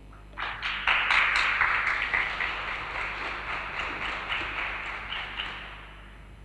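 Audience applauding, starting about half a second in, at its loudest just after, then tapering off and dying away near the end.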